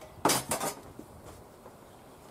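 Metal pipes clanking together as they are handled at a table: two sharp clanks with a short ring in the first second.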